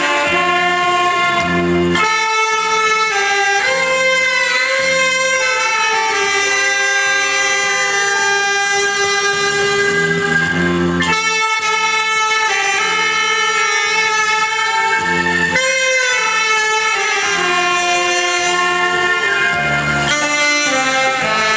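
A saxophone ensemble, an alto saxophone among them, playing a slow melody in long held notes over a backing track from a loudspeaker.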